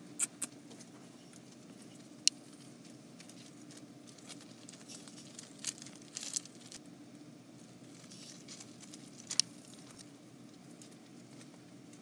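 A faint steady hum with a few short sharp clicks or taps scattered through it. The loudest click comes about two seconds in and another near nine seconds.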